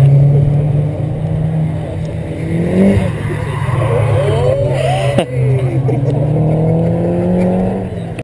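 Car engines running and revving out on the circuit, heard from trackside: a steady drone with revs rising and falling in the middle, and a brief sharp click about five seconds in.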